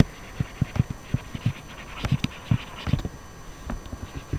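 Stylus tapping and scratching on a pen tablet during handwriting: a string of short, irregular taps with a brief scratchy rasp about two seconds in.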